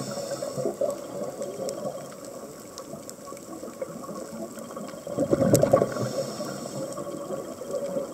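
A scuba diver's exhaled breath bubbling out of the regulator, heard underwater: one burst of bubbles about five seconds in, lasting a second and a half, with the tail of an earlier burst at the very start, over a steady hiss.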